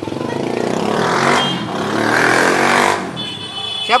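A motor vehicle passing close by: its engine grows louder, peaks mid-way, and drops away about three seconds in.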